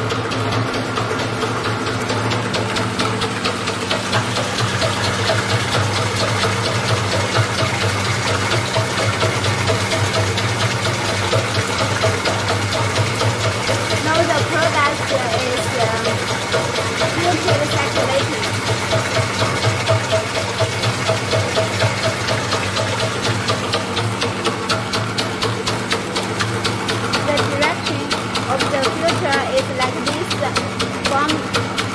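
Perfume chiller mixing machine running, its pump circulating the liquid through the filter and back into the mixing tank: a steady hum with a fast, even pulsing throughout.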